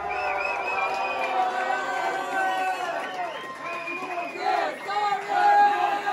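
Small club crowd cheering, whooping and shouting after a metal song ends, swelling louder near the end.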